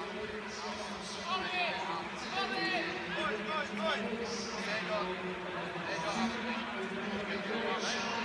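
Indistinct voices talking and calling in a near-empty football stadium, over a steady low hum.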